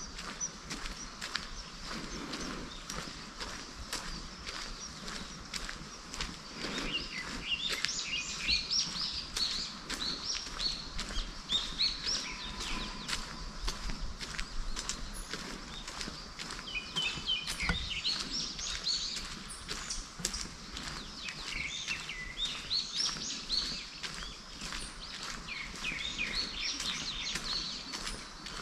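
Several small birds singing in bursts of quick chirps and trills, growing busier after the first few seconds, over the walker's steady footsteps on a paved path.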